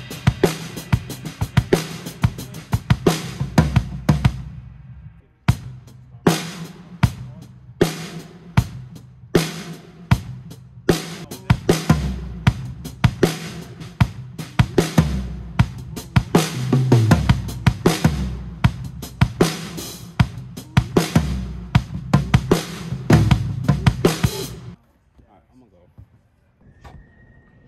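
Franklin acoustic drum kit with a brass snare being played in a large empty arena: bass drum, toms and snare struck in quick runs and fills, with a short break about five seconds in, stopping suddenly near the end.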